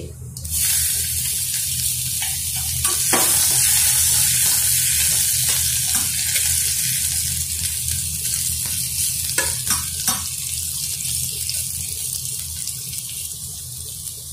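Sliced garlic sizzling in hot oil with cumin and nigella seeds in a steel kadai, starting about half a second in, loudest early on and slowly dying down as it fries. A few scrapes of a flat spatula stirring against the steel pan cut through it, over a steady low hum.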